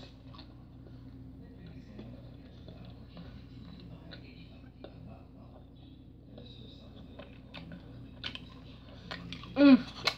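A mouthful of Skittles being chewed with the mouth crammed full: faint, scattered wet clicks and smacks. Near the end comes a short loud laugh.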